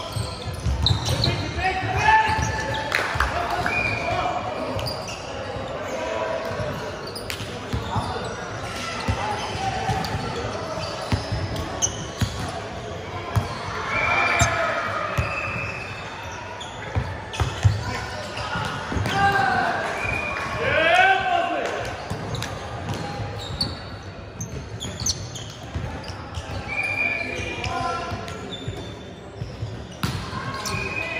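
Indoor volleyball play: the ball being struck and hitting the hardwood court in repeated sharp smacks, mixed with players' shouts and calls, all echoing in a large hall.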